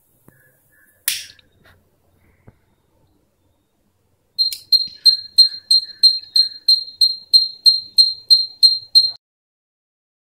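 A short hiss about a second in as gas is released from a lighter at the sensor. A few seconds later the robot's piezo buzzer beeps a steady high-pitched beep about three times a second, some fifteen beeps, then stops: the LPG gas sensor's alarm signalling that it has detected the gas.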